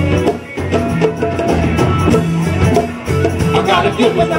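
Live band playing a funk jam, with a steady bass line and drums.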